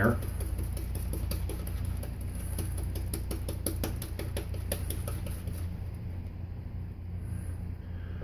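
Shaving brush whipping soap lather in a lather bowl to work air into it: a quick, even run of wet clicks, about five a second, that fades out after about five and a half seconds. A steady low hum runs underneath.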